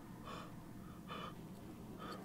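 Two short, strained gasps for breath, a little under a second apart, from a badly wounded man bleeding from the mouth.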